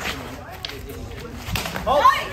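Short sticks knocking during a sparring exchange: a few sharp knocks, the loudest about one and a half seconds in, followed by a shout near the end.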